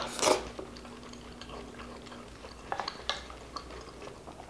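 Eating noises: a short mouth sound from a wooden spoon in the mouth just after the start, then a few light clicks of the spoon and fingers against the plate.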